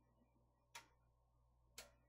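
Near silence with a low steady hum, broken by two short, sharp clicks about a second apart.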